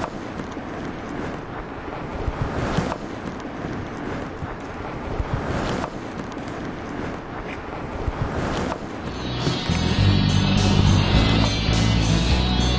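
Wind on the microphone and water sounds at a rock pool, with a few short knocks. About nine seconds in, guitar rock music with a heavy beat starts and becomes the loudest sound.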